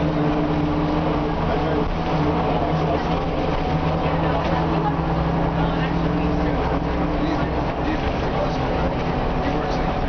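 Cummins M11 diesel engine of an Orion V city bus running at a steady pitch, heard from inside the passenger cabin along with road noise.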